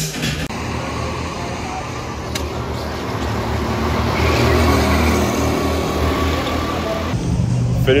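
Go-kart engines running as karts drive around a track: a steady low engine hum under a noisy wash, getting louder about halfway through.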